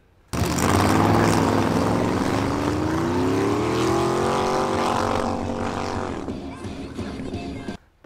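Diesel pickup trucks accelerating hard down a drag strip. The engine note climbs steadily in pitch for a few seconds, then holds and fades as the trucks pull away, before cutting off sharply near the end.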